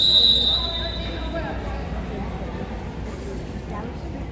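A volleyball referee's whistle blows once: a single shrill note, loudest at the start and dying away within about a second, ringing in the gym.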